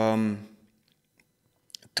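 A man's voice holding a drawn-out filler sound for about half a second, then a pause, then two or three quick small mouth clicks, lips parting, just before he speaks again.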